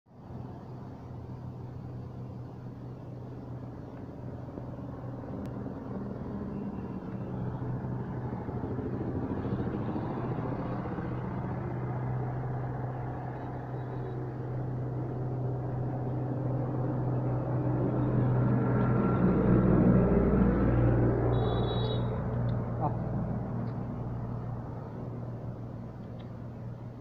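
A vehicle engine running steadily throughout, growing louder to a peak about twenty seconds in and then fading, as of a vehicle passing close by.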